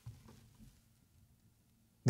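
Near silence: room tone, with a faint short sound right at the start.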